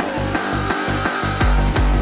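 Hard, fast electronic dance music of an acidcore tekno live set. The pounding kick drum drops out for about a second and a half, leaving a held high synth tone, then the fast kick comes back in.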